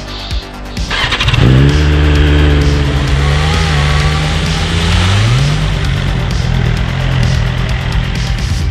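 BMW superbike's inline-four engine starts up about a second in and keeps running at a steady fast idle, its pitch rising briefly around five seconds in as it is revved.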